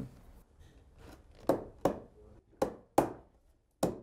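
Five sharp wooden knocks spread over about two and a half seconds, starting about a second and a half in: a wooden stair nosing being set and knocked down onto the stair edge, its glued slot taking the spline.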